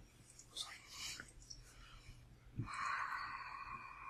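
Faint, murmured speech with a few soft clicks, and a dull thump a little past halfway.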